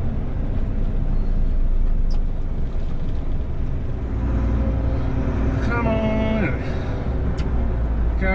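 Steady low rumble of a heavy truck's engine and tyres, heard from inside the cab while driving at road speed. A man's voice briefly sounds about six seconds in.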